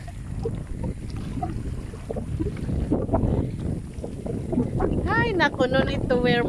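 Wind buffeting the microphone, a low uneven rumble. A person's voice calls out near the end.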